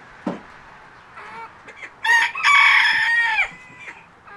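A rooster crowing once, about two seconds in: a short first note, then a long held note that falls away at the end. Softer clucking from the flock comes before it.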